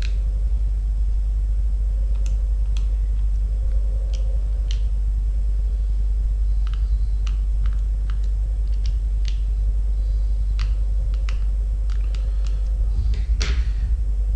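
Scattered light clicks of a small screwdriver working the three back screws of a plastic SafeLife personal alarm pendant, with a longer scrape near the end, over a steady low hum.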